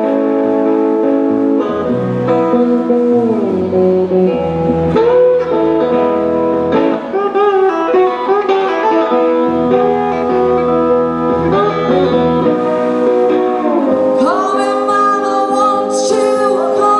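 Blues played live on a lap steel guitar with a slide, notes gliding smoothly up and down, accompanying a woman singing; her voice comes in strongly near the end.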